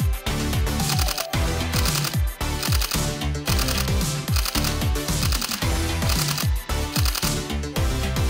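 Background music with a steady beat of deep, pitch-dropping kick drums under held chords.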